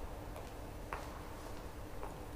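Quiet church room tone: a faint steady hum with a few scattered light clicks, one near the start and a sharper one about a second in.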